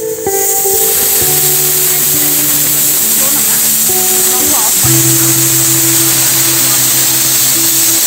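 Aluminium stovetop pressure cooker whistling: steam forcing past the weight on its vent in a loud, steady hiss, the sign that it has come up to full pressure. Background music plays underneath.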